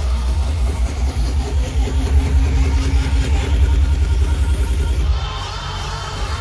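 Bass-heavy electronic dance music played loud through a festival sound system, heard from within the crowd, with a dense pounding sub-bass. The deep bass drops away about five seconds in.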